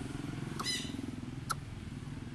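Greater coucal giving a low, steady, rapidly pulsing call, with a short squeak about two-thirds of a second in and a sharp tick at about a second and a half.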